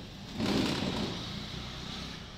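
A wooden striker rubbed against a metal bowl. It makes a scraping, rushing sound that swells about half a second in and then fades.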